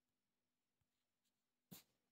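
Near silence with faint room tone, broken once near the end by a brief faint click.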